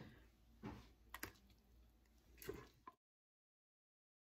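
Faint clicks and soft scraping of a spoon against a stainless steel pot as cooked oatmeal is scooped into plastic containers, with a sharp click just after a second in. The sound cuts out completely about three seconds in.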